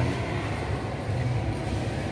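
Steady low rumble of background noise, with no speech.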